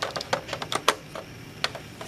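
Irregular light clicks and clacks of a 1.5-volt battery being handled in its metal spring-clip holder as it is taken out and put back in reversed, the loudest click just before halfway.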